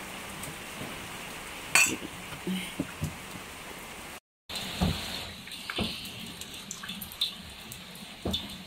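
A cleaver cutting pork belly on a wooden chopping block, a few sharp knocks in the first half. After an abrupt cut about halfway, water splashing and dripping in a stainless steel pot.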